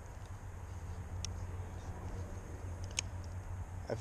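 Low, steady outdoor rumble with a faint background hiss, broken by two brief faint ticks, one about a second in and one near the end.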